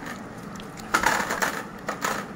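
Close-up crinkling and crunching from eating fast food and handling its paper and cardboard packaging, with a dense burst about a second in that lasts about half a second.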